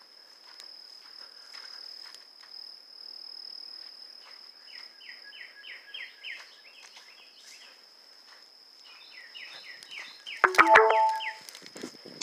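Insects droning steadily at a high pitch, with a bird calling in runs of quick repeated chirps and faint footsteps along a sandy trail. A loud, brief sound with a few held tones comes near the end.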